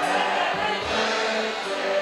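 A cover band playing a song with voices singing over a low drum beat.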